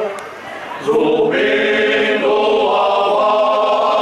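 Men's choir singing Alentejo cante unaccompanied, in long, slow, held chords. A brief breath-pause in the first second, then the next phrase sets in.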